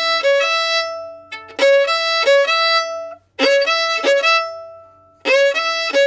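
Solo fiddle playing the same short bowed phrase of alternating C-sharp and E notes over and over, about every two seconds. Each phrase starts with a slide up into the C-sharp and ends on a held E.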